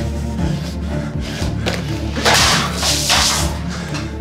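A white liquid thrown against a mirror, splashing in two loud bursts a little after two seconds in, over tense background music.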